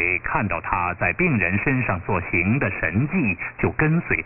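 A voice reading aloud in Mandarin Chinese, heard over a shortwave AM broadcast. Everything above the voice's middle range is cut off, so it sounds thin and muffled, with a faint steady hum underneath.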